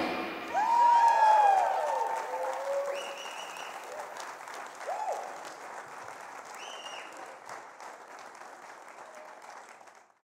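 Audience applauding after a live rock band finishes its song, with a few cheers and whistles, gradually dying away.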